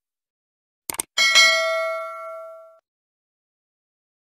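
Subscribe-button animation sound effect: a quick double mouse click about a second in, followed at once by a bright notification bell ding that rings for about a second and a half and fades away.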